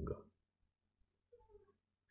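A brief, faint cat meow about one and a half seconds in, against near silence.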